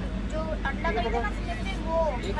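People talking in a train coach over the steady low rumble of the train.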